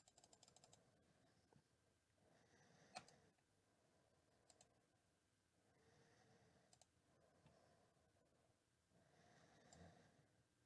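Near silence with faint scattered clicks: a quick run of computer keyboard and mouse clicks in the first second, then a few single clicks.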